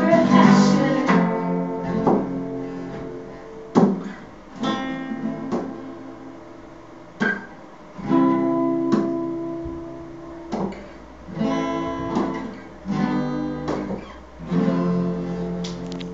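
Acoustic guitars strumming chords, each struck and left to ring out and fade before the next.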